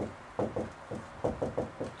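Dry-erase marker writing on a whiteboard: a quick run of about eight short taps and strokes as letters are written.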